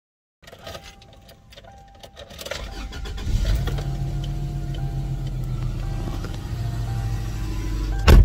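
Car engine starting about three seconds in and then idling steadily, heard from inside the cabin, after a few faint clicks and rustles.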